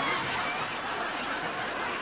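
Studio audience laughing, a crowd's laughter that swells up just before and carries on steadily.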